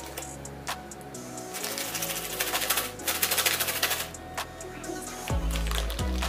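A small plastic candy packet crinkling as it is handled and worked open by hand, a rapid fine crackle strongest in the middle seconds, over background music.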